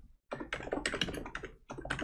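Fast typing on a computer keyboard: a quick run of keystrokes with a brief pause near the end.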